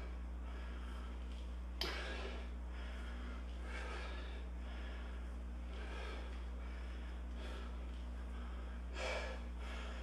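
A man's hard breathing during a set of dumbbell deadlifts, with a breath every second or two over a steady low hum. A single sharp click comes about two seconds in.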